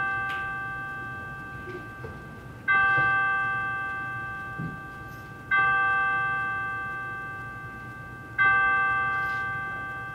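A bell tolling: three strikes about three seconds apart, each ringing on and slowly dying away.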